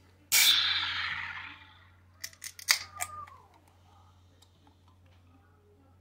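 Aluminium can of nitro cold brew oat milk latte cracked open: a sudden pull-tab crack and a hiss of released gas that fades over about a second and a half, followed by a few sharp clicks from the can.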